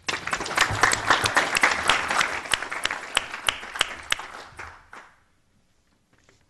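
Audience applause, starting at once and dying away after about five seconds.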